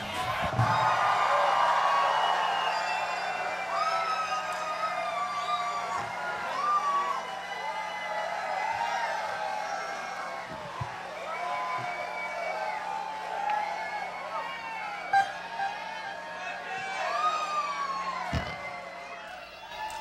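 A large concert crowd cheering, whooping and whistling as a song ends, the noise slowly dying down toward the end.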